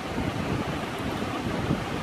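Wind blowing across the microphone: an uneven, low rushing noise.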